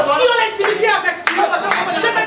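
Hands clapping, repeated sharp claps under a loud, impassioned woman's preaching voice.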